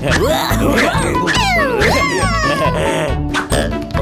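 Cartoon background music mixed with the characters' squeaky, wordless cartoon vocalisations, with several quick falling swoops in pitch.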